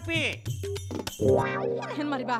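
Brief speech, then background music: a held chord with quick plucked-string notes over it, coming in about a second in.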